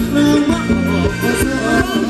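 Thai ramwong dance music played by a live band, with a steady drum beat under a sustained melody line.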